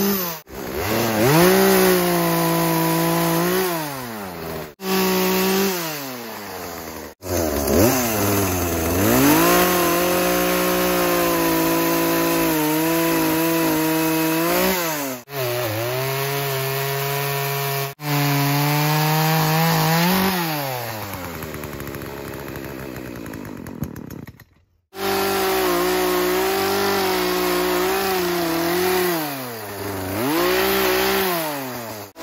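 Poulan Pro 18-inch two-stroke chainsaw cutting wood, its engine pitch rising and falling over and over as it revs and bogs under load. The sound breaks off abruptly several times, and after about twenty seconds the engine slows toward idle before one cut.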